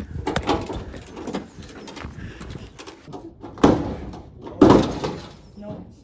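A flat-tyred drag car being dragged up onto a steel car trailer: irregular scraping, creaking and clanking, with two louder scrapes about three and a half and four and a half seconds in.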